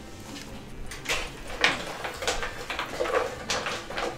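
Hard plastic clacks and knocks from a clear acrylic raffle box being handled, its lid lifted and moved, about half a dozen sharp ones from about a second in.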